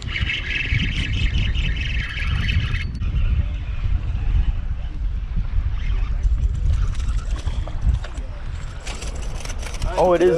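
Spinning reel being cranked, a fast fine whirring from its gears for the first three seconds or so, over a steady low rumble of wind on the microphone.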